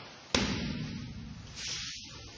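A single sharp slap on the training mat about a third of a second in, fading out over the following second in the hall.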